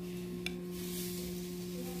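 A steady low hum throughout, with a single small click about half a second in and faint soft rubbing as the stuffed pomfret is handled on the plastic plate.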